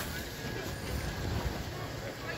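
Wind rumbling unevenly on the microphone over general outdoor background noise, with faint voices.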